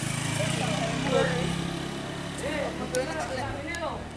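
A small motor scooter's engine running as it passes close by, swelling in the first couple of seconds and then fading, with people talking and calling out around it.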